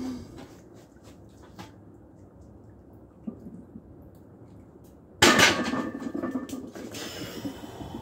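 A loaded barbell, 225 lb, is set back into the steel uprights of a weight bench about five seconds in: a sudden loud metal clang, with the bar and plates ringing for a couple of seconds after it. Before that there is only faint movement noise while the bar is paused on the chest.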